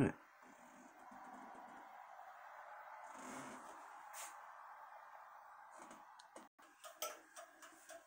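Quiet room tone: a faint steady hum, with a few short, soft clicks and knocks near the end.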